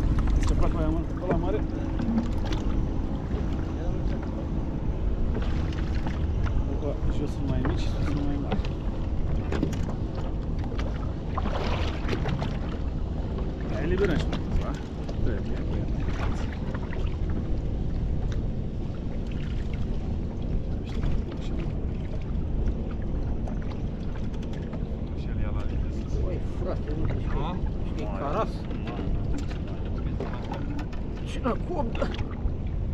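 Steady low rumble of wind and water aboard a boat, with scattered knocks and clicks of fishing gear and faint, muffled voices.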